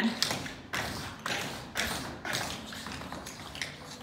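Tap shoes clicking on a wooden studio floor: an irregular scatter of taps, a few a second.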